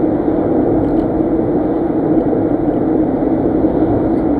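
Steady road and engine noise inside a moving car's cabin, an even drone with a constant low hum.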